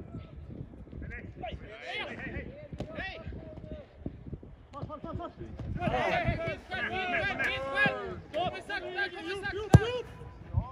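Footballers shouting short calls to each other across the pitch, most busily in the second half. Near the end a single sharp thud of the football being kicked stands out as the loudest sound.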